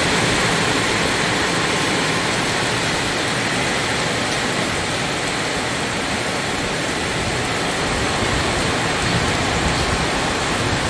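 Heavy rain falling steadily, an even, unbroken hiss.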